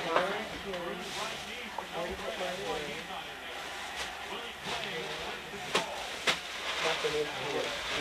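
Indistinct background chatter of several people in a room over a steady hiss, broken by a few sharp clicks about four, five and three-quarter, and six seconds in.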